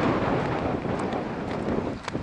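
Strong wind buffeting the camera microphone, a steady low rushing that eases gradually and then drops away at the end.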